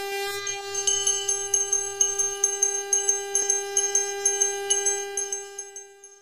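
A conch shell (shankh) blown in one long steady note while a small hand bell rings rapidly over it, about four or five strikes a second. The sound fades out near the end.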